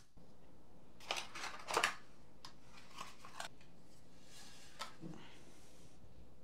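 Flush cutters snipping plastic zip ties, two sharp snips a little under a second apart, followed by a few light clicks of handling.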